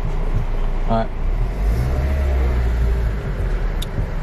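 Car engine running, heard from inside the cabin, its low drone growing louder for a second or two in the middle as it takes up load, typical of the car pulling away.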